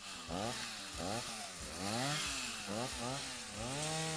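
Two-stroke chainsaw revving up and down over and over, its pitch climbing and dropping roughly every half second.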